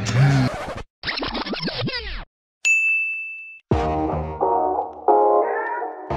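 Music breaks off, followed by a short burst of cartoon sound effects with sliding pitches and then a single bright ding held for about a second. Upbeat instrumental music starts again about halfway through.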